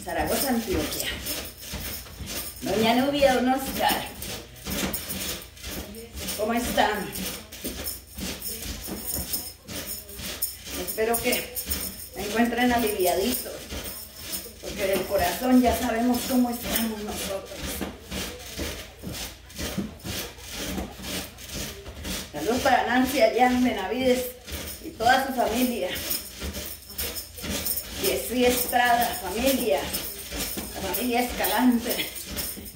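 Rhythmic rasping and rattling from bouncing on a mini trampoline with hand-held shakers, with a voice heard at intervals.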